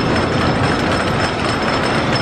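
Custom Coasters International wooden roller coaster train running on its wooden track: a steady, loud rumble and clatter, with a thin high whine above it.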